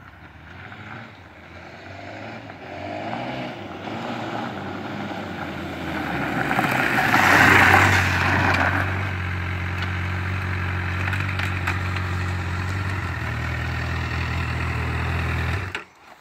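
2010 Honda CBR1000RR's inline-four engine approaching and growing louder, loudest about seven and a half seconds in, then idling steadily nearby. The engine stops abruptly just before the end.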